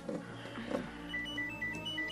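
A mobile phone ringing: a simple ringtone melody of quick, short, high beeps starting about a second in, over soft background music that has two short falling whooshes near the start.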